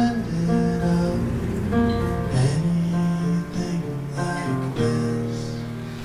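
A song performed live on solo acoustic guitar, with a man singing along at the microphone.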